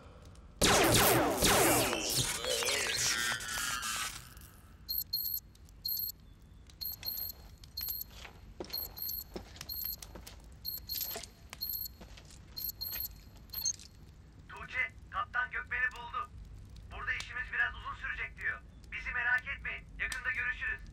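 A man laughs loudly for about three seconds. Then a run of high electronic beeps and clicks goes on for about nine seconds, and short warbling electronic bursts follow near the end.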